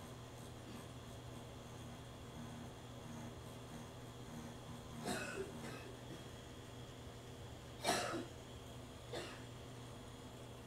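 Pen-style tattoo machine running steadily with a low hum as its needle shades practice skin. Three short breaths from the artist break in, about five, eight and nine seconds in, the one near eight seconds the loudest.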